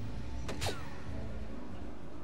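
A soft-tip dart strikes an electronic dartboard about half a second in: a sharp click, then at once a quick falling electronic tone from the board as it scores a single 20.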